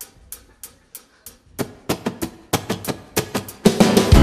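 Live band starting a song: a steady ticking beat about three times a second, joined about one and a half seconds in by fuller chords on the beat, then the full band with drum kit comes in loudly near the end.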